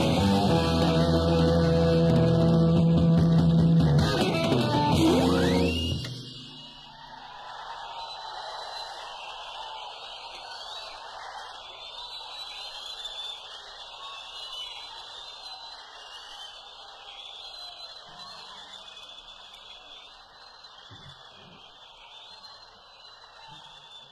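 Live jazz-rock band of electric guitar, electric violin, organ, bass and drums playing loudly, then ending about six seconds in with a falling pitch sweep. After it comes audience applause and cheering with whistles, much quieter, fading slowly.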